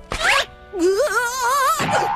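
Animated film soundtrack: background music under cartoon sound effects. A quick rising swish comes first, then about a second of loud warbling, wavering cry that wobbles up and down in pitch and stops suddenly near the end.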